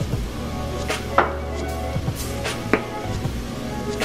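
Background music with steady held tones, with a few sharp knocks about a second apart.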